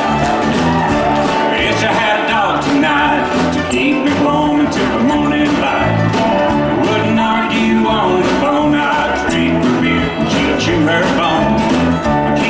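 A live roots-country band playing: drums keeping a steady beat under upright bass, acoustic guitar and mandolin.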